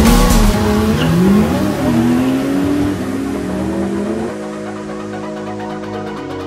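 A drift car's engine revving hard, its pitch rising and falling as it slides, over a hiss of tyre noise. About four seconds in it gives way to electronic music.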